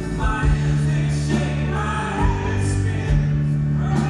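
A live band playing folk-rock on upright piano, electric bass, drums and cello, with voices singing over it and wavering held notes on top.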